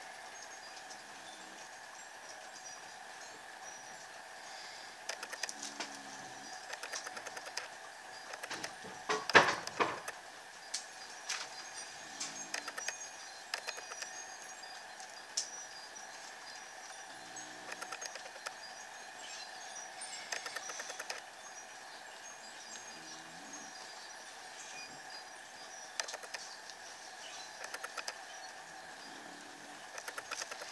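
Black permanent marker scratching and squeaking on journal paper in short sketching strokes, with scattered small taps and one louder knock about nine seconds in, over a steady faint high hum.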